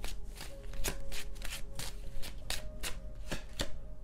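A deck of tarot cards being shuffled by hand: a quick run of crisp card snaps and riffles, about four a second.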